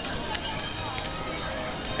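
Steady outdoor crowd ambience: a low murmur of distant voices, with a few faint clicks.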